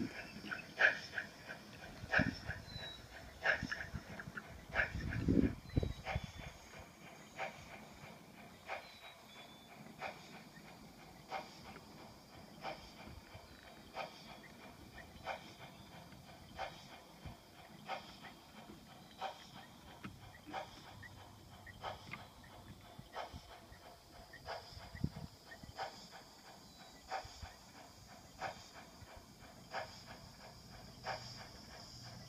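Gn15 model train running on its track loops, with a faint, regular clicking about one and a half times a second. A brief louder low sound about five seconds in.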